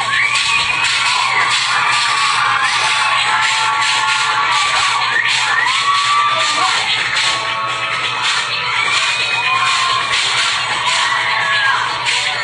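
Concert crowd screaming and cheering, many high voices calling out over loud music.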